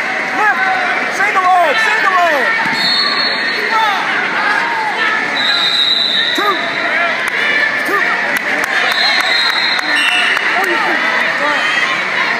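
Many voices shouting and calling at once in a large gymnasium during a wrestling bout, with a high steady tone sounding briefly about four times over the top.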